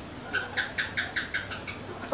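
Laughter: a quick run of about eight short, evenly paced laughing pulses lasting about a second and a half, following a joke.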